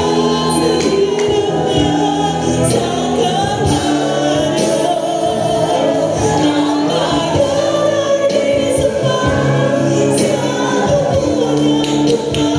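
Mixed choir of women and men singing a solemn gospel worship song through microphones, voices held and gliding over steady sustained accompaniment.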